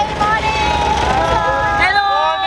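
Open safari jeep driving past, its engine and tyres rumbling steadily, with passengers' voices over it.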